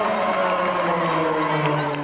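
Crowd of spectators in the stands cheering and shouting, with one long drawn-out tone that slides slowly lower in pitch.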